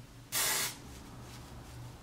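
A single short spray from an aerosol can of hairspray, a hiss of about half a second, sprayed onto a lifted section of hair before teasing.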